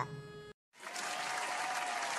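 Applause from a crowd: a steady patter of clapping that starts just under a second in, after a brief moment of dead silence, and runs on at an even level.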